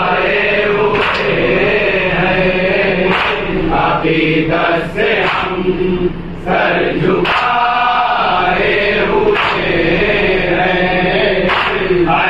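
A group of men chanting an Urdu devotional salam together at a microphone, unaccompanied by instruments.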